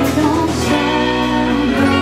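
Live pop band music: a woman sings a held, wavering note over electric bass and guitar, the bass line changing about a second in.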